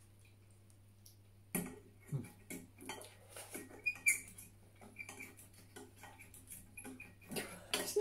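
Metal forks clinking and scraping against a ceramic bowl as noodles are twirled, in short, irregular, faint clicks starting about a second and a half in.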